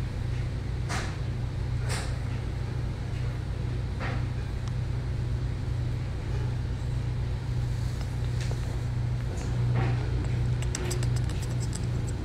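Steady low-pitched hum with a few faint brief clicks; near the end a quick run of faint ticks.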